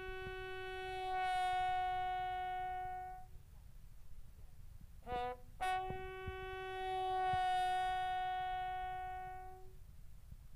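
A lone bugle sounding a slow military funeral call. Two long held notes swell and fade, with a short quick figure between them about five seconds in.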